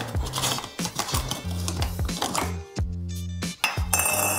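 Metal screw lid being twisted off a glass mason jar of fermenting salsa, clicking and scraping on the jar's threads, with a clink as it is set down; the jar is being opened to let out fermentation gas. Background music plays throughout.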